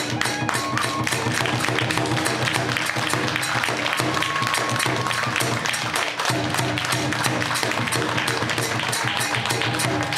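Kagura ensemble music: a barrel drum and hand cymbals struck in a fast, steady beat, with a transverse flute holding a few long notes that come in and drop out.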